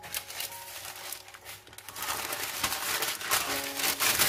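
A sheet of baking paper is crumpled and crinkled by hand, a dense crackling that grows louder about halfway through, over faint background music.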